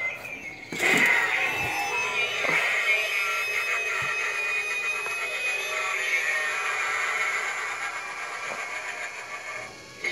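Halloween animatronic prop's built-in soundtrack: spooky music playing through its small speaker. It starts suddenly about a second in as the pumpkin-headed figure pops up, then runs steadily and fades a little near the end.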